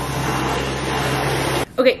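Cordless stick vacuum cleaner running steadily over a hard floor, cutting off abruptly about a second and a half in.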